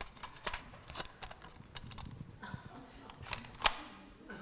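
Small plastic clicks and knocks from a red plastic toy viewer being handled, with a sharp click near the end, the loudest sound.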